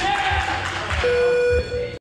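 Electronic buzzer tone: one steady, flat-pitched buzz of about half a second starting about a second in, then a shorter repeat of the same tone near the end.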